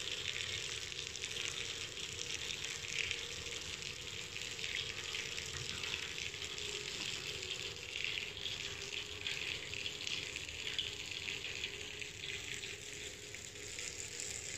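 Steady hiss of running water at a swimming pool, with a faint low hum underneath.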